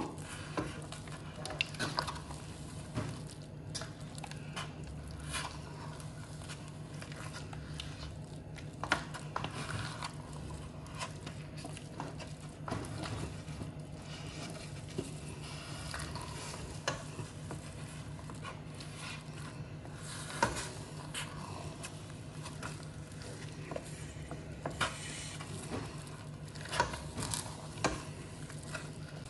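Wooden spatula stirring and folding thick mor kali (rice and sour-curd dough) in a stainless steel pot, with scattered soft scrapes and knocks against the pot. A low steady hum runs underneath.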